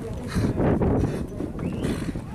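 Horses walking on a dirt track, hooves clip-clopping.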